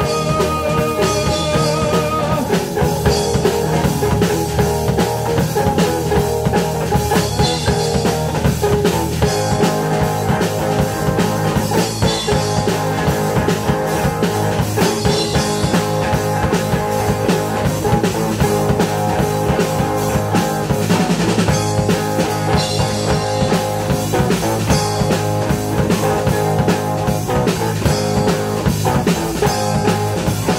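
Live rock band playing an instrumental passage: electric guitar, bass guitar and drum kit, with a held, wavering high note in the first two seconds.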